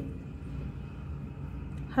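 Steady low background rumble with no distinct events; a woman's voice begins right at the end.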